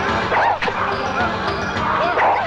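Dubbed film fight sound effects: a couple of sharp hits about half a second in, with a woman's cries and background music.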